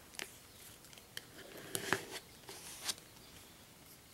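Plastic card scraping nail polish across a metal nail-stamping plate: about half a dozen short scrapes and clicks, the loudest about two seconds in.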